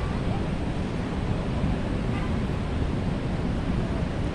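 Steady din of motorcycle and car traffic at a busy intersection, with wind buffeting the microphone.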